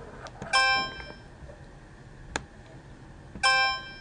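Bell-like chime sound effect from an online count-money activity, heard twice about three seconds apart, with a sharp click between them.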